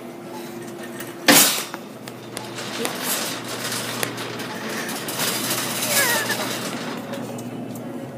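A single sharp bang about a second in, the loudest sound here, over steady grocery-store background noise with faint voices.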